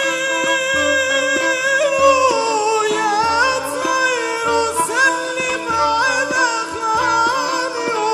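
A man singing an Arabic folk song in long, ornamented, wavering melodic lines, over an ensemble accompaniment with a regular low beat.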